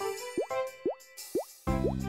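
Cartoon sound effects: four short rising plops, about two a second, over light background music. A deeper bass part comes in near the end.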